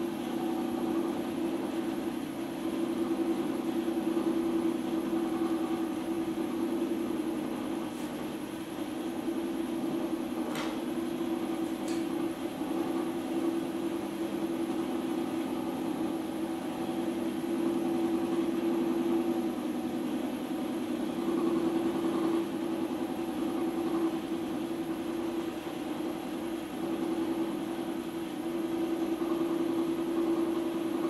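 Electric potter's wheel running at a steady speed, its motor giving a steady hum, with a few faint ticks between about eight and twelve seconds in.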